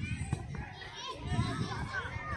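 Children's voices calling and shouting, several overlapping, during a youth football match, over a low rumble.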